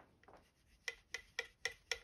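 Handling of a 3D-printed plastic mounting jig: five light, evenly spaced clicks, about four a second, in the second half.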